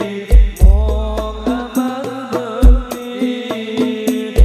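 Male voices singing an Islamic sholawat devotional song in a chanting style, over a percussion ensemble of frame-drum strikes and deep bass-drum booms.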